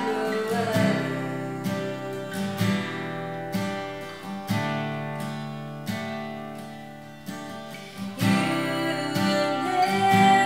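Acoustic guitar strumming chords, each left to ring and fade before the next strum, roughly one a second. A woman's singing comes back in near the end.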